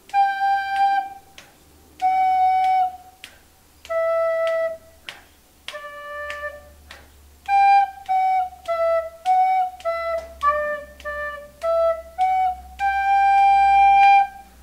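Soprano recorder playing a simple single-line beginner melody at a quick tempo: a few longer notes, then a run of short notes stepping down and back up, ending on a long held G.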